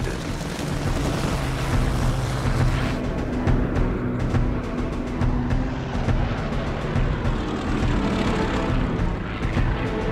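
Documentary music over the steady drone of a propeller aircraft's engine.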